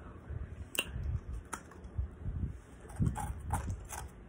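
Ice being chewed and crunched between the teeth: several sharp cracks a second or so apart among steady wet chewing.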